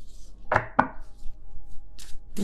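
A tarot deck being handled at the table: two sharp knocks about a quarter second apart, with light rustling of cards before them.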